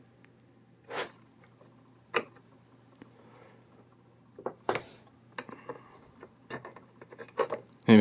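A few sharp clicks and light ticks of a soldering iron tip and a metal solder sucker knocking against a circuit board while a small component is desoldered, the three clearest about a second, two seconds and nearly five seconds in, over a faint low hum.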